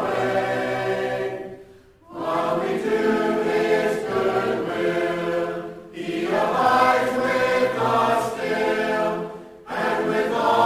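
A choir singing a hymn in several voices, in phrases of about four seconds with a short break between each.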